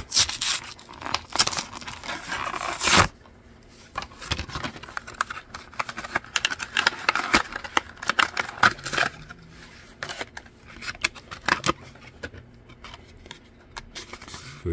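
A cardboard-and-plastic blister pack is torn and peeled open by hand. The loudest tearing of card comes in the first three seconds, followed by lighter crinkling of the plastic blister with scattered clicks and scrapes.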